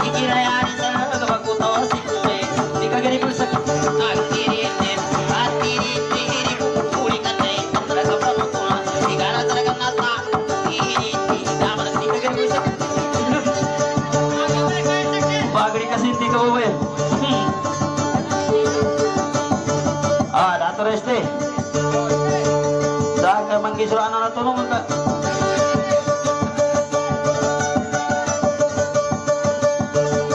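Live, amplified music from a small guitar-like plucked string instrument playing a repeating tune. A man sings short gliding phrases into a microphone in the middle and later part.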